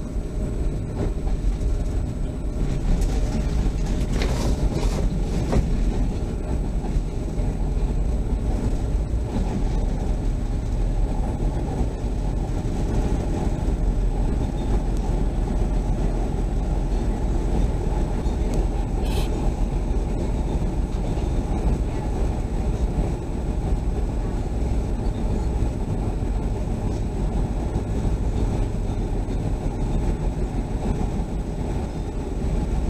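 Chicago CTA Orange Line rapid-transit train running along the track, a steady low rumble of wheels and running gear heard from inside the car. A few sharp clicks come about three to five seconds in, and one more near the middle.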